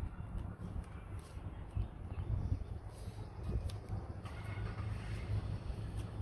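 Faint outdoor ambience: a low, uneven rumble with a few soft knocks.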